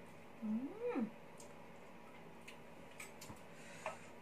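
A woman's appreciative 'mmm' as she tastes spicy food, one short hum sliding up and then back down in pitch, followed by a few faint light clicks.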